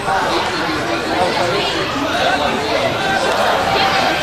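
Many voices talking over one another in indistinct chatter, echoing in a large indoor hall.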